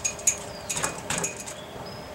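Several light metallic clinks and taps from steel suspension parts being handled: a tension control rod mount bracket being set against a lower control arm.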